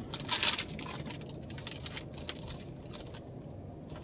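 Trading cards being handled and flipped through by hand: a brief rustle of cards sliding against each other about half a second in, then scattered light clicks and taps.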